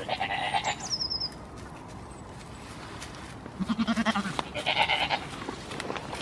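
Goats bleating: three wavering bleats, one right at the start and two close together about three and a half to five seconds in.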